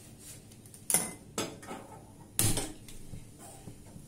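Kitchen utensils and metal containers clinking and knocking as they are handled, three sharp clinks, the first about a second in.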